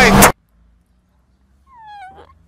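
A boy wailing loudly while crying, cut off abruptly about a third of a second in. Near the end comes a short, quieter cry that falls in pitch.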